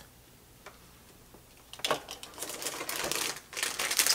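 Handling noise: near silence, then from about two seconds in a quick run of small clicks and rustling that grows louder, as sunglasses are taken off and the next pair is picked up.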